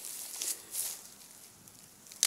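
A smartphone dropped onto grassy, leaf-covered soil in a drop test: rustling of dry grass and leaves, with a couple of brief louder rustles in the first second, then quieter.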